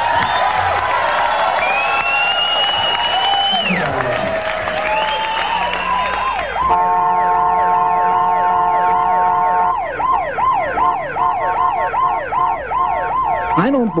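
Emergency-vehicle sirens: slow wailing sirens rising and falling in the first half. Then a steady horn blast of about three seconds, starting about seven seconds in, followed by a fast yelp siren cycling a little over twice a second.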